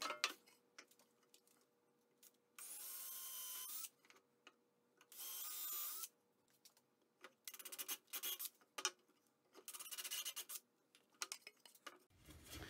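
Cordless drill running in two short bursts, boring pilot holes into the wooden shelf boards. These are followed by a quick string of light clicks and knocks as the wood is handled.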